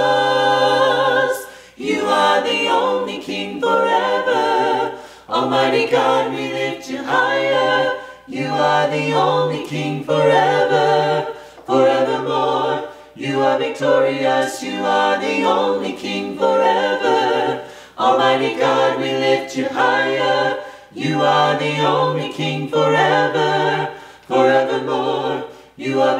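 A mixed quartet of two men and two women singing a worship song a cappella in harmony, in short phrases with brief breaks between them.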